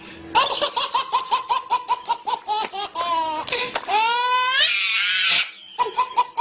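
A baby belly-laughing in quick, high-pitched bursts of about eight a second, breaking about two thirds of the way through into a long squeal that rises in pitch, then going back to rapid laughs.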